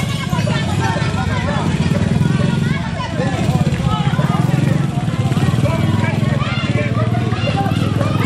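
A small motorcycle engine running steadily with a low, evenly pulsing note, under the voices of several people talking and calling out.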